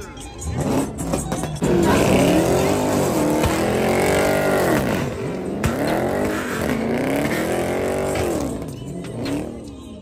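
Car engine revving hard during a burnout, its pitch climbing and dropping about four times, over crowd noise.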